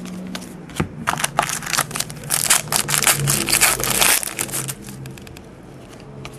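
Hockey trading cards being slid one behind another in the hands, a quick run of papery clicks and rustles that is busiest in the middle and thins out near the end.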